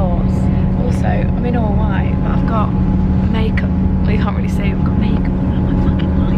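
Women talking over the steady low rumble and hum of a moving passenger train, heard from inside the carriage.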